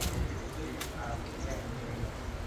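Background conversation, several people talking quietly, with a sharp click at the very start and another a little under a second in, over a low steady rumble.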